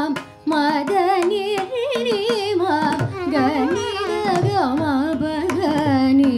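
Carnatic classical music: a female voice sings with wavering, ornamented pitch, shadowed by violin, over mridangam strokes and a tanpura drone. The music drops briefly just after the start, then carries on.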